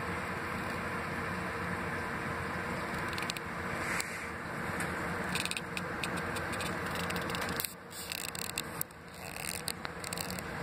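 A steady low hum, with scraping and clicking handling noise from the recording device in the second half. The hum drops out briefly a couple of times near the end.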